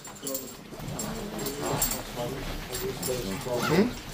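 Several men's voices speaking Russian at once in a crowded hallway, with scattered clicks and shuffling. A short rising vocal sound comes just before the end.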